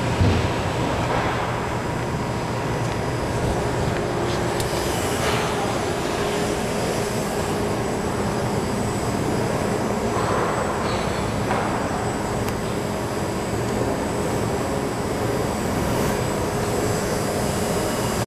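Adco CTF-470V automatic tray former running: a steady mechanical drone and low hum from its motors and vacuum pump, with a few short sounds on top.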